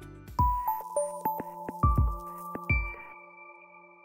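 Short electronic logo jingle: chime-like notes struck over a few deep beats, each note ringing on. About three seconds in, the beats stop and a held chord fades away.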